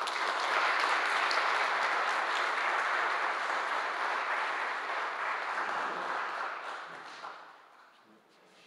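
Audience applauding, steady for about six seconds and then dying away over the last two.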